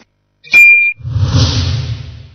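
Logo-animation sound effects: a short high beep about half a second in, then a loud rushing noise with a deep rumble that fades near the end.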